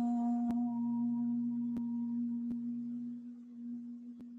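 A woman chanting OM, holding the closing hum on one steady note that grows fainter toward the end.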